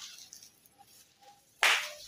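Leafy cane stalks rustling faintly, then a sudden loud swish of leaves near the end as the bundle is swung up overhead onto a roof.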